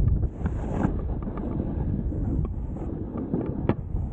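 Heavy wind buffeting the camera microphone during a downhill snowboard ride through snow, a low rumbling rush with scattered small clicks. A sharper click comes near the end.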